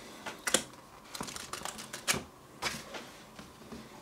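Heavy pages of a large hardback book being turned and pressed flat by hand: a run of short, crisp paper clicks and rustles at an uneven pace, the sharpest about half a second in.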